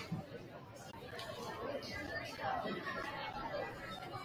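Crowd chatter in a gymnasium: many spectators talking at once, with no single voice standing out.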